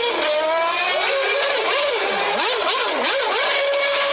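Formula One car engine running at a high, steady pitch, then revved up and down rapidly several times in the middle before settling back to a steady high note.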